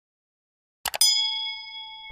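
Two quick clicks just before a second in, then a bright bell ding that rings on and fades: a subscribe-button sound effect, the cursor clicking the notification bell icon.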